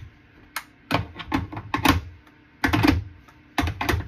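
Small hard objects clattering as they are handled: a run of irregular clicks and knocks in short clusters.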